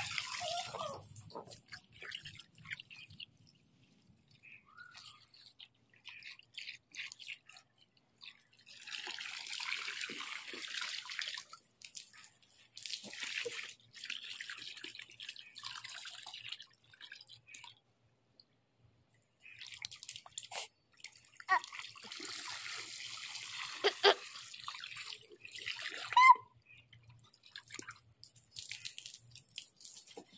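Water from a garden hose splashing into a small inflatable paddling pool, in spells with quieter gaps between them. There are a few sharp clicks in the second half.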